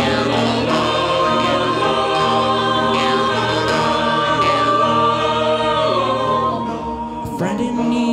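Mixed choir singing, with a harmonica solo played over it; the held notes bend and glide in pitch.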